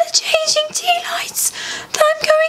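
A high-pitched voice in short, breathy phrases with a lot of hissing sounds.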